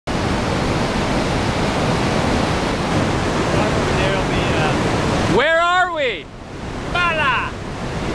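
Whitewater rapids below a dam spillway, a steady, dense rushing noise. About five seconds in, the rushing drops away abruptly, and a voice calls out with a rising-then-falling pitch, followed by a shorter call.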